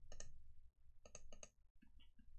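A few faint, sharp clicks from a computer's mouse or keys: two just after the start, then about four in quick succession about a second in.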